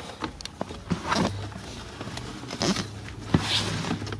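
Light clicks, taps and short scrapes as a nut driver is fitted onto a bolt of a plastic blower motor housing, with a low hum underneath.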